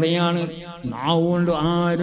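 A man's voice intoning in a sung, chant-like delivery, holding long notes on a steady pitch with a short break just before the middle.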